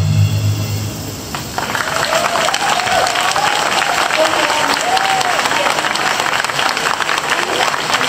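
The ensemble's last chord dies away about a second in. The audience then breaks into steady applause, with a few voices calling out over it.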